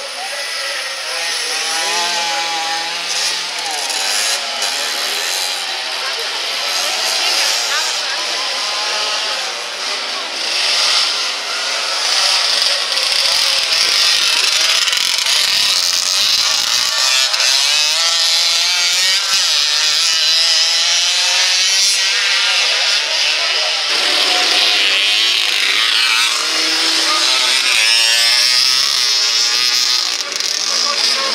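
Several motocross motorcycles racing on a dirt track, their engines revving up and down over one another as the riders work the throttle and gears through the turns. The sound gets louder about twelve seconds in as the bikes come nearer.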